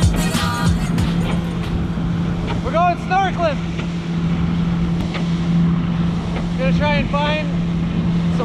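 Inflatable speedboat's motor running steadily at speed, a constant low drone under the rush of wind and spray. Short rising-and-falling voice calls ring out about three seconds in and again near the end.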